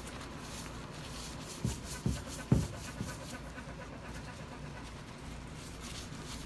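Paper towel rubbing polish over a granite slab in repeated strokes, with three dull thumps close together about two seconds in.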